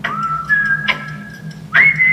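A whistled tune from a commercial, played back over loudspeakers: long held notes, with a quick slide up to a higher held note near the end, and a few sharp clicks between the notes.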